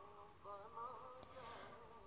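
Near silence, with a faint, wavering pitched hum under it.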